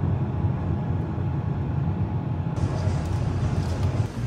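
Low, fluttering rumble of a moving vehicle heard from inside: road and engine noise, with a higher hiss joining about two and a half seconds in.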